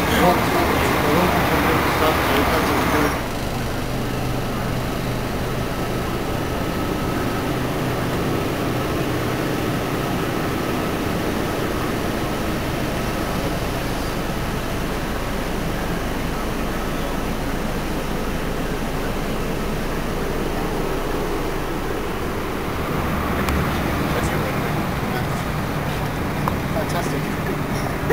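Steady drone of a coach's engine. Indistinct voices sound over it for the first three seconds, ending abruptly, and chatter comes back faintly near the end.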